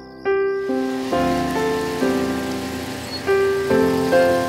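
Slow piano music from a soundtrack, one held note after another about every half second, over a steady hiss that starts about half a second in.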